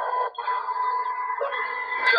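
Steady hiss of a field recording's background noise, with a faint constant hum and whine under it and a brief drop about a third of a second in.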